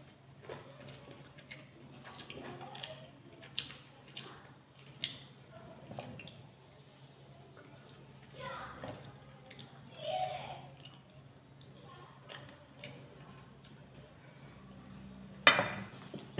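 Close-up eating sounds: chewing and mouth noises with scattered small clicks of fingers working food on a plate, and one sharp clink near the end at the metal bowl.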